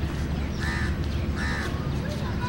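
A bird calling twice, two short calls a little under a second apart, over a steady low background rumble.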